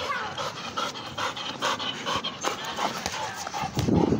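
Pit bull panting hard in quick, short breaths, about four a second. It is out of breath and tired from chasing a ball.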